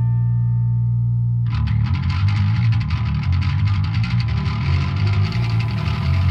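Death metal instrumental passage: a distorted electric guitar chord rings out over a low bass note, then about a second and a half in, a fast, rapidly repeating guitar-and-bass riff starts.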